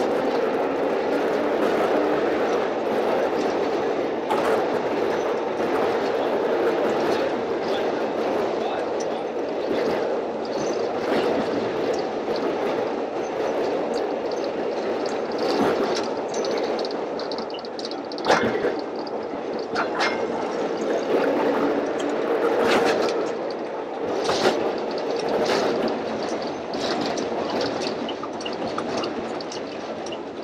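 Streetcar running on rail: a steady rolling noise with scattered sharp clicks and knocks from the wheels and track.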